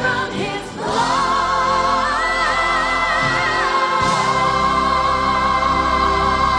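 Recorded gospel-style choir music with band: the choir holds long notes with vibrato, and a higher voice holds a line above them in the middle.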